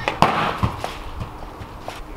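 A football kicked hard: one sharp thud about a fifth of a second in, followed by a few fainter knocks and footsteps on patio slabs.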